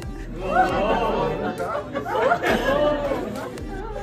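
Several people chattering at once, with music playing underneath.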